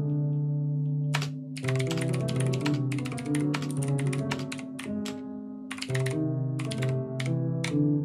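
Fast typing on a computer keyboard, the key clicks sounding over piano notes and chords that the keystrokes trigger in Ableton Live. A pause of about a second near the start, then a dense run of keystrokes and more sparse ones toward the end, the notes ringing on between them.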